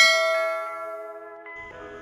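A notification-bell chime sound effect, struck once just before the start: several tones ringing together and fading away slowly.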